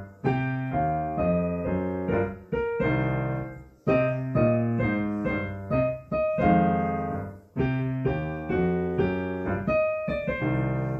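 Digital piano played four hands as a duet: a jazz piece of struck chords over bass notes, in short phrases with brief breaks between them.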